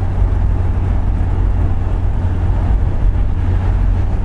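Interior cabin noise of a 2003 SsangYong New Korando cruising at 80 km/h: a steady, deep drone.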